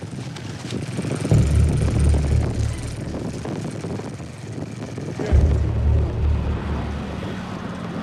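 Motorcycle engine running under way while riding. Its low note comes up loud about a second in and again after about five seconds.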